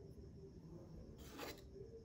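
Near silence: faint room tone with one brief soft sound about one and a half seconds in.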